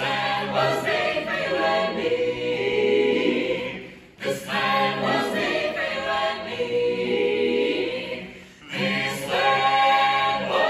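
Mixed a cappella vocal ensemble of women and men singing in close harmony in a domed rotunda, phrase by phrase, with brief breaths between phrases about four seconds in and near the end.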